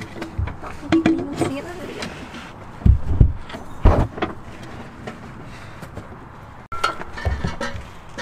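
A few dull thumps and knocks, the strongest about three and four seconds in, as an aftermarket Magnaflow exhaust pipe is worked into place under a car.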